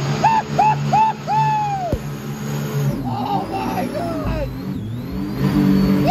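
Riders whooping and yelling in a quick run of short, high calls over the steady drone of the mini jet boat's supercharged engine as it runs through the rapids.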